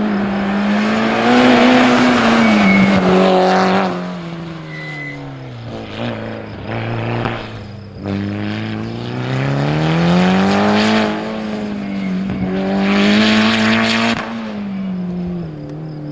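Mitsubishi Lancer rally car's engine worked hard around a tight circuit. The revs climb and drop several times as it accelerates and slows for corners, loudest twice: in the first few seconds and again near the end.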